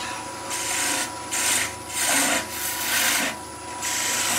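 Heel of a skew chisel pushed into a small spindle of wood turning on a slow-running lathe, in four short rasping cuts about half a second each. Each stroke pushes the wood fibres back into a little burr.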